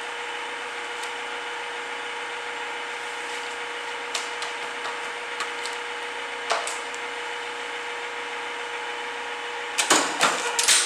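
Double corner cutter (paper miter) running between cuts: its electric motor and belt drive give a steady hum with a constant tone, with a few light clicks and taps midway as the sheets are handled. Right at the end a sharp cutting stroke starts.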